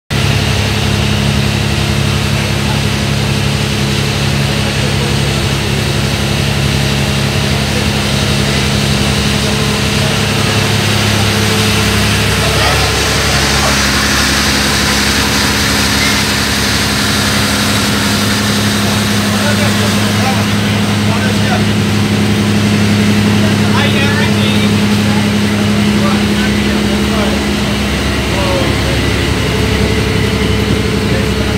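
A boat's engine running at a steady speed, a constant low drone that does not change, under a steady rushing noise.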